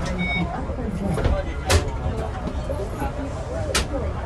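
Indistinct talk of several people crowded inside a bus, over a steady low rumble. A short electronic beep sounds right at the start, and two sharp clicks come near the middle and near the end.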